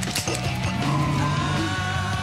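Music with long, steady held notes, from a montage of film clips, with a few sharp clicks near the start.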